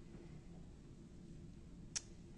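Quiet room tone with a faint steady hum, broken by one short, sharp click just before the end.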